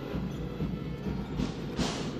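Basketball arena ambience: crowd noise with music, heavy in the low end with an uneven beat. A short sharp sound cuts through near the end.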